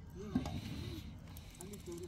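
Low voices talking, with one short sharp knock about a third of a second in.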